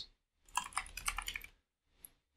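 Typing on a computer keyboard: a quick run of keystrokes lasting about a second, starting about half a second in.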